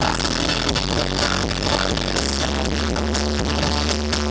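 Live synth-pop band playing: electric guitar and keyboards over a steady drum beat and sustained bass notes.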